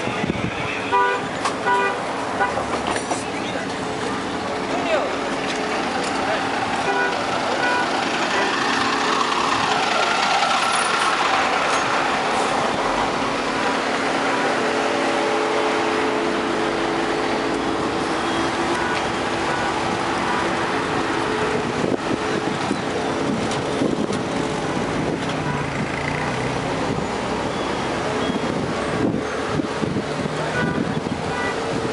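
Outdoor street noise: a crowd's background voices over road traffic, with a steady droning tone held for about ten seconds in the middle.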